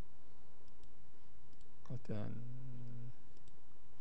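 A few light clicks of a computer mouse as windows are switched on a desktop PC, then a man's drawn-out, steady hesitation sound ("ehh") lasting about a second.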